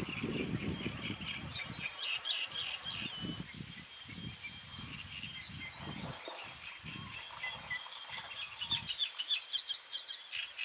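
Wetland ambience of many small birds chirping and singing in the background, busiest near the start and again near the end, over irregular low rumbling underneath.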